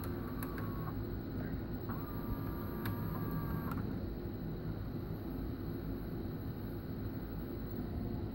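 VCR rewinding a VHS tape at full speed on open reels: a steady whir from the capstan/reel motor and spinning reels. A faint whine comes in briefly at the start and again from about two to nearly four seconds in.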